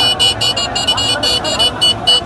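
A shrill, high-pitched tone sounding in rapid short blasts, about five a second, over the noise of a crowd.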